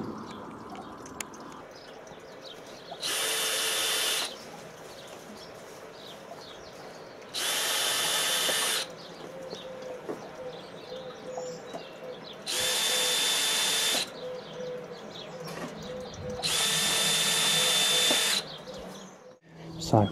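Cordless drill driving screws into decking-board timber: four short runs of motor whine, each one to two seconds long, the last the longest.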